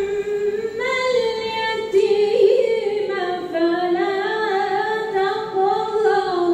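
A woman's unaccompanied melodic Quran recitation in tajweed style: one voice holding long phrases that slide up and down in pitch with ornaments.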